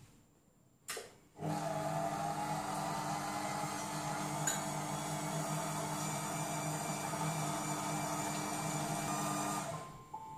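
A Monsieur Cuisine Connect food processor's motor spinning its blades at speed 4, beating buttercream as icing sugar is added. It starts about a second and a half in, just after a click, runs with a steady hum and winds down just before the end.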